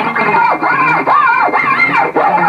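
Amplified electric guitar's plain G string slid up and down the neck for a wolf-whistle effect: a series of arching swoops, each rising and then falling in pitch.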